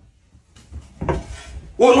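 Faint knocks and handling noise as a wooden pole is picked up off the floor, followed near the end by a man's loud voice.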